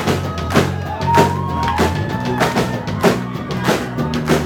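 Live indie rock band playing: electric guitars, bass and drum kit, with drum hits on a steady beat under a sliding guitar line.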